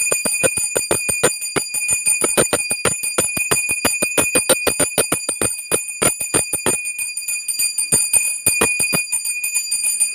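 Small brass puja hand bell (ghanta) rung rapidly and without a break, its clapper striking about six times a second over a steady high ring.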